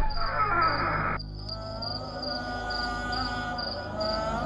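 Crickets chirping steadily, about three chirps a second, as a night ambience. A rushing noise cuts off suddenly about a second in, and a sustained musical drone comes in under the chirping.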